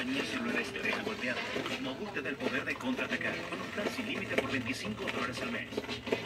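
Indistinct speech: voices talking more quietly than the close-up talk around them, too unclear to make out.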